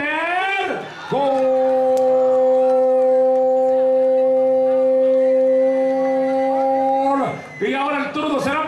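A man's long drawn-out shout of "gol" for a scored penalty kick. A short rising call is followed by one steady note held for about six seconds.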